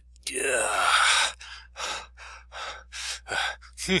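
A man gasping: one long, loud drawn breath a quarter second in, then quick ragged breaths about three a second.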